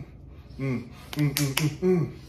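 Hands slapping in a rock-paper-scissors count: fists coming down onto open palms, several sharp smacks in the second half. Between them come short muffled 'mm' hums from people whose mouths are shut and full of water.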